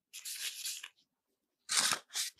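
Close-miked handling of soft chocolate dough as it is worked and divided by hand: a short rustling scrape, a pause, then a louder crinkling rustle near the end.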